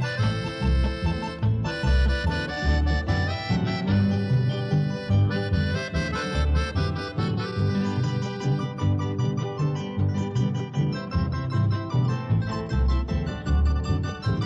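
Instrumental passage of a 1970s Paraguayan polka recording: accordion lead over strummed guitar and a regular bass beat.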